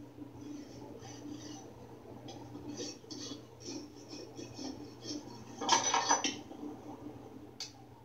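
A farrier's rasp filing the hoof wall and the edge of a nailed-on steel horseshoe: repeated rasping strokes, about two a second, with one louder scrape just before six seconds in. It is heard through a TV speaker, with a steady low hum under it.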